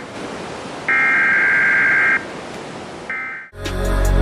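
A repeating high electronic beep tone, each beep lasting a little over a second with about a second between, over a constant hiss. It breaks off short about three and a half seconds in, when music with drums begins.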